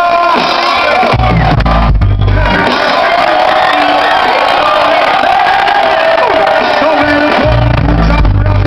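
Live reggae band with bass guitar and a vocalist, played loud through the PA and heard from among a cheering audience. Heavy bass notes come in about a second in and again near the end.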